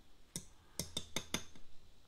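A plastic utensil clinking against a glass olive jar as whole olives are fished out, about five sharp clinks in the first second and a half.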